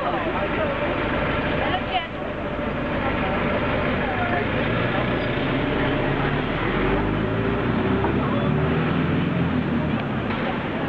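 Busy street ambience: steady traffic noise, with a heavy vehicle's engine running louder in the second half, under the chatter of people standing close by.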